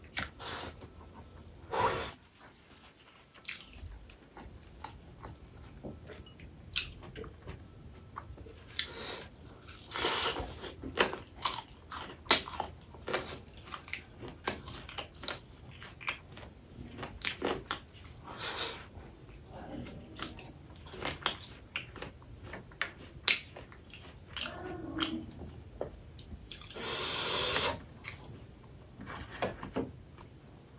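Close-miked chewing and wet lip smacks of a man eating rice and dal, with soft squishes of his fingers mixing rice on a metal plate. The sounds come as many short, irregular clicks, with one longer, louder noisy stretch near the end.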